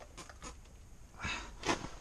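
Quiet breathing of a man handling a large fish, with a louder breath out about a second and a quarter in and a short sharp sound near the end.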